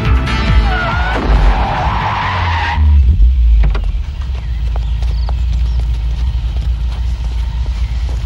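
A car's tyres screeching under hard braking for nearly three seconds, cut off by a loud thump as the car hits the girl. Then a low steady rumble of the stopped car running, with a few small clicks.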